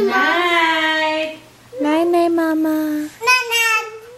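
A young child singing three drawn-out notes, the first two each held for over a second and the last one shorter.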